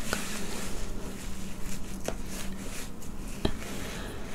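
A few soft clicks and handling noises close to a microphone, over a steady low hum.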